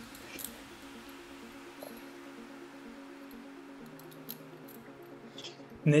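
Quiet background music with steady held tones, and a few faint clicks from resistance-band handles and clips being handled.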